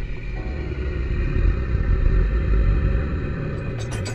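A deep, loud rumble with a noisy hiss over it, a sound effect in the projection show's soundtrack, swelling in the middle. A quick run of sharp clicks starts right at the end.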